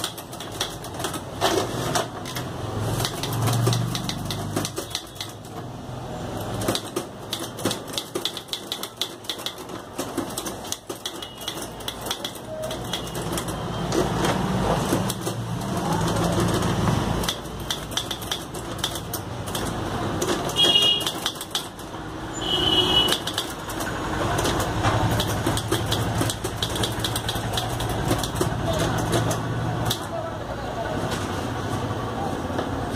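Godrej Prima manual typewriter being typed on: a dense, irregular run of key strikes clacking against the platen.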